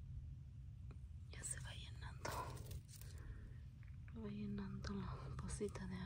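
A quiet, whispered or murmured voice, with a short hummed voice sound about four seconds in, over a low steady rumble.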